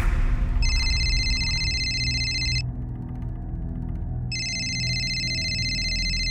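A phone ringing: two electronic rings, each about two seconds long and a second and a half apart, the first starting just under a second in.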